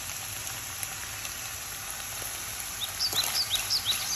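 Strips of beef frying with onion in oil in a nonstick frying pan, a steady sizzle: the meat's juices have cooked off and it is starting to brown. Near the end come a few short high squeaks as a spatula starts stirring in the pan.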